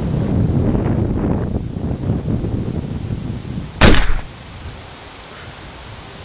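A single loud revolver shot, a sharp double crack about four seconds in. Before it, wind rumbles on the microphone.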